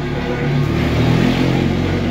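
A motor vehicle's engine, its rumble swelling from about half a second in, over recorded music playing.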